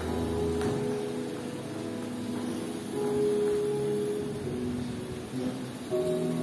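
Soft, sustained keyboard chords, a quiet held pad with no singing; a low bass note drops out about half a second in, and the chord changes about three seconds in.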